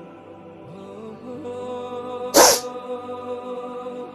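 Soft background music with long held notes, and about two and a half seconds in a short, loud sniff from a woman who is crying.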